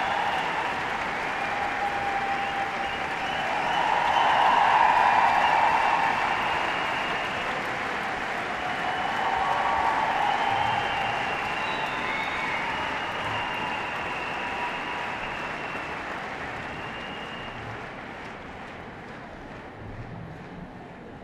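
Audience in a large hall applauding, swelling about four seconds in and again near ten seconds, then slowly dying away.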